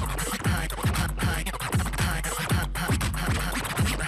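DJ scratching a record on a turntable-style controller platter over a hip hop beat: quick back-and-forth scratches, about four a second, each a falling swipe in pitch.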